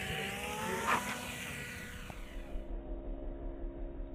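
RC Sky Surfer foam plane's electric motor and propeller whining as it passes low and close, the pitch falling slightly as it goes by, with a sharp knock about a second in at its loudest. Later a fainter, steady hum.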